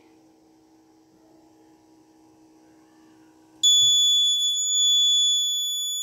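Electronic alarm buzzer on an Arduino accident-detection board sounding one continuous high-pitched tone that starts suddenly about three and a half seconds in, after a faint low hum: the accelerometer has registered the tilt as an accident.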